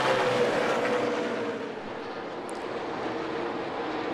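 NASCAR Cup Series stock cars' V8 engines running at racing speed. A car goes by with its pitch falling away and the sound fading over the first couple of seconds, then the engine note builds slightly again near the end.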